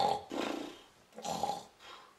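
A man imitating snoring with his voice: three rough, throaty snore sounds in quick succession, the last one fainter.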